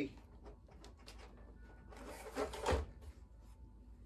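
Soft rustling and scraping of hands pulling seedlings and their soil out of a plastic cell tray. A louder scrape and a bump come about two and a half seconds in.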